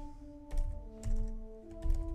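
Keystrokes on a computer keyboard, an irregular run of clicks starting about half a second in, over background music of slow sustained notes.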